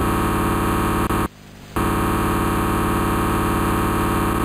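Loud, harsh electronic buzz, one dense droning tone. It cuts out for about half a second just over a second in, then resumes unchanged.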